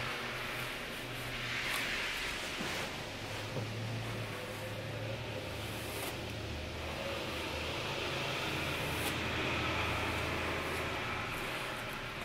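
Hair being brushed upward with a firm styling brush, giving soft rustling strokes over a steady background hiss and low hum.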